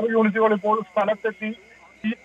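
A man reporting in Malayalam over a telephone line, thin-sounding, breaking off about a second and a half in.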